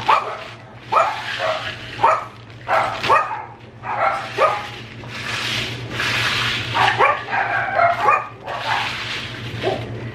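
Pet dogs barking and yipping again and again in short separate calls. In the middle, loose caramel corn rustles as it is scooped and poured into a plastic zip-top bag.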